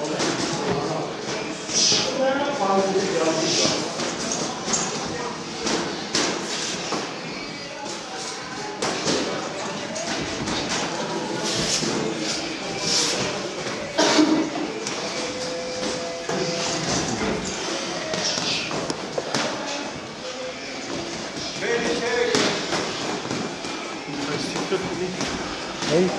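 Boxing gloves landing in irregular thuds and slaps as two boxers spar, with voices talking over them.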